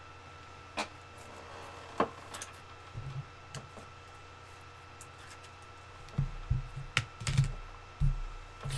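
Scattered sharp clicks and soft low knocks, coming thicker from about six seconds in, over a faint steady electrical hum.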